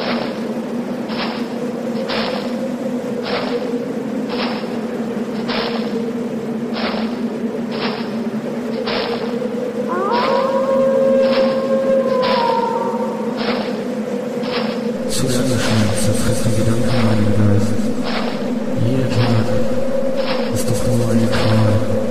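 Atmospheric black metal music: a steady droning tone with a sharp beat about once a second, and a higher melodic line briefly about ten seconds in. About fifteen seconds in, a low repeating bass figure and a cymbal-like wash join.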